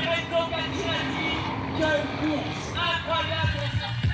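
A person's voice speaking or calling out over background noise, not the commentary.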